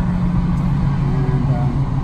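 Steady engine hum and road noise heard from inside the cabin of a moving vehicle; the engine note drops slightly in pitch in the second half.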